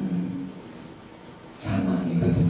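A voice heard through a microphone and PA. A held voiced sound fades out at the start, followed by about a second of room tone, and then a voice starts up again near the end.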